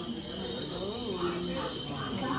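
Steady cricket chirping, a bayou-night ambience, over low crowd chatter.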